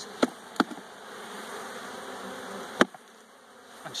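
Honeybees buzzing steadily around an opened hive. There are three sharp knocks of wooden hive frames being handled: two near the start and one just before three seconds in. After that the buzzing drops quieter.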